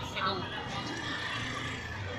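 Indistinct voices of people talking, with steady low street noise underneath.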